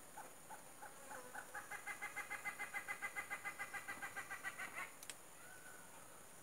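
A bird calling: one short note repeated about three times a second, then speeding up and getting louder before it stops about five seconds in.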